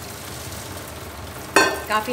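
A steady hiss, then about one and a half seconds in a sudden loud clank with a brief ring as a stainless steel pot is handled at the kitchen sink while boiled spinach is tipped out.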